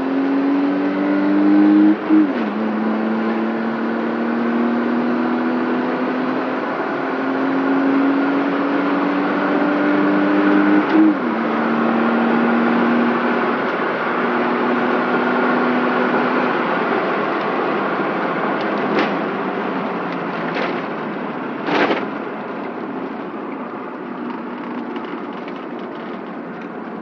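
BMW 325i's straight-six engine heard from inside the cabin under hard acceleration: its pitch climbs, drops at a gear change about two seconds in, climbs again through a long pull to a second shift around eleven seconds, then gives way to a steadier run with road and wind noise. A few brief knocks come late on.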